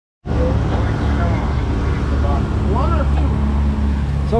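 Outboard motors of a sport-fishing boat running steadily under way, a constant low drone mixed with the rush of the wake and wind.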